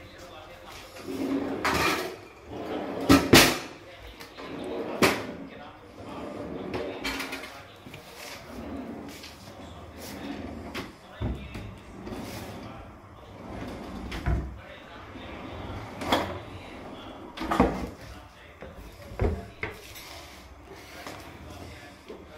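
Kitchen cabinet drawers and a corner carousel pull-out being opened and closed, their runners sliding and the fronts and baskets knocking shut, with a double knock about three seconds in and several more through the rest.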